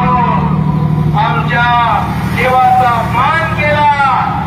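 A rally speech heard over public-address loudspeakers, in short phrases, over a steady low hum.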